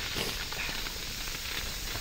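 Steady hiss of an inflatable snow tube sliding over packed snow.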